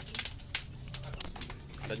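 Wood fire crackling in a hearth of split firewood planks, with scattered sharp pops, the loudest about half a second in.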